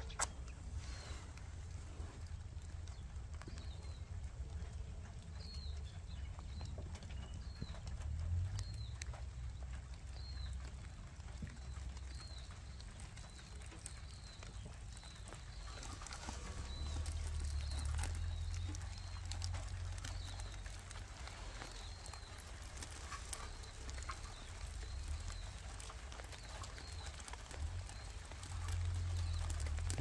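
A bird calling over and over, one short chirp about every second, over a low, uneven rumble.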